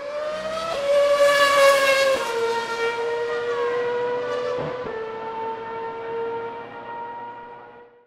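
Intro sound effect of a racing car engine holding a high, steady note with strong overtones. Its pitch climbs at first, then shifts a few times, and the sound fades out near the end.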